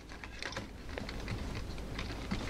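Light, irregular clicks and rustles of a power adapter and its cable being handled and set down on a telescope tripod's spreader tray.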